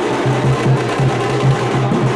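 Drumming with a fast, steady beat, percussion only and no singing.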